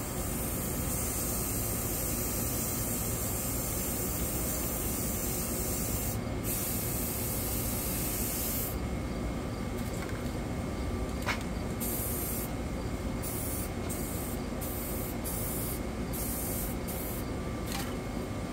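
Aerosol spray paint cans hissing as paint is sprayed onto water. A long, nearly continuous spray with one short break runs for the first several seconds, then a run of short bursts follows. A single sharp click comes about eleven seconds in.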